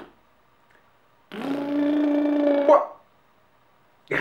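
A boxer dog makes one long, steady vocal sound of about a second and a half, held at one pitch. Its pitch rises briefly just before it stops.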